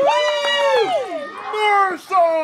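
A person's voice in two long, high-pitched, drawn-out calls with no clear words, each rising and then falling in pitch.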